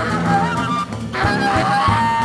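Live free-jazz quartet playing: tenor saxophone in wavering, sliding phrases over low tuba and cello tones, with scattered drum hits.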